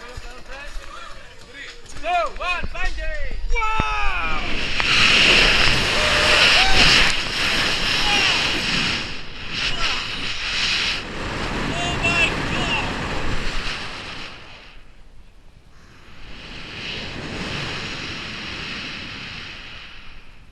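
Wind rushing over a body-worn camera's microphone during a bungee jump's free fall and rebounds. It swells loud about four seconds in, drops away for a second or two about three-quarters of the way through, then comes back. Before the rush a voice gives short rising-and-falling whoops.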